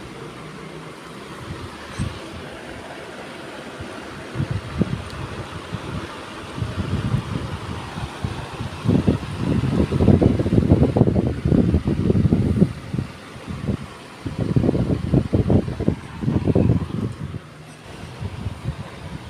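Wind buffeting the microphone in irregular low rumbling gusts, heaviest from about halfway in and again near the end.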